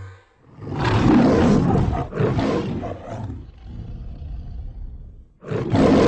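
A loud roaring noise in two surges: the first builds about half a second in and fades away over a few seconds, and the second starts suddenly near the end.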